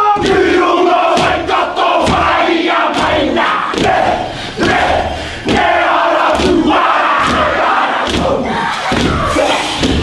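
A group of men performing a haka: many voices shouting the chant together in unison, punctuated by repeated sharp slaps and stamps.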